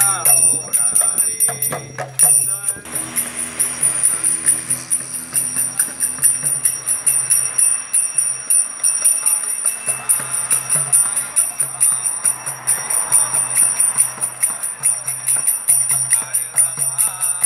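Karatalas, small brass hand cymbals, clashing in a steady rhythm, with a mridanga drum beating on and off underneath. A man chants along for the first few seconds, then the cymbals and drum carry on alone.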